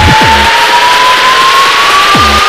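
Speedcore music at about 250 bpm in a break. The pounding kick drum drops out after one hit at the start, leaving a single tone that rises steadily in pitch over a wash of noise.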